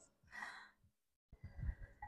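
A woman's faint breathing: a soft exhale about a third of a second in, then a second breath with a low rumble around a second and a half in.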